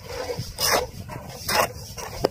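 A metal shovel scraping and turning a wet cement-and-sand mix on the ground, with two louder strokes about a second apart.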